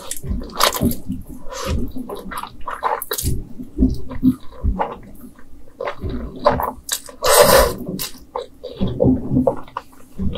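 Close-miked slurping and chewing of Chapagetti black bean instant noodles: wet, irregular mouth smacks and sucking sounds, with one longer, louder slurp about seven seconds in.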